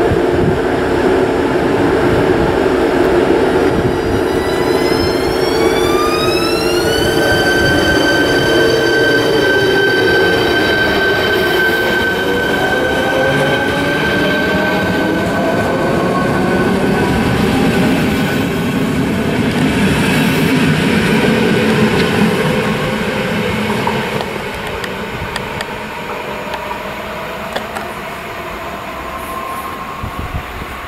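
ČD class 471 CityElefant double-deck electric multiple unit passing close along the platform track: its electric traction drive whines in several tones that rise in pitch for a few seconds and then hold steady, over the rumble of wheels on rail. The sound fades over the last several seconds as the train moves away.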